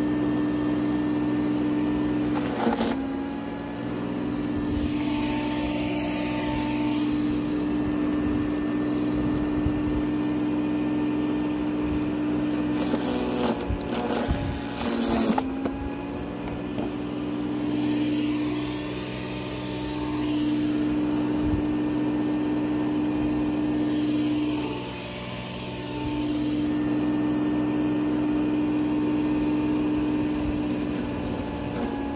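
Sun Joe electric mulcher running with a steady motor whine. Its pitch sags briefly several times as compost material is pushed down the chute with the plunger and loads the cutter.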